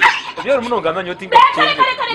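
Speech only: a woman and a man speaking in an animated argument.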